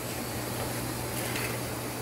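Steady low hum with an even hiss from shop machinery running, unchanging throughout.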